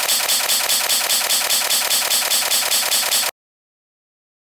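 A loud edited sound effect of rapid, even rattling pulses, several a second, that runs for about three and a half seconds and then cuts off abruptly.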